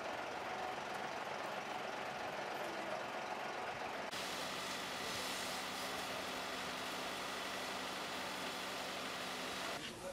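Steady outdoor noise with an engine humming. About four seconds in the sound cuts to a fire engine's pump motor running steadily under the hiss of a fire hose jet.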